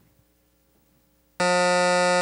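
Near silence, then about 1.4 s in a loud, steady electronic buzzer tone sounds for just over a second: the quiz game's time-up buzzer, with no team having buzzed in to answer.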